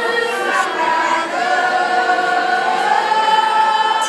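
A student choir singing together in chorus, mixed voices, closing on a long held note over the last two seconds or so.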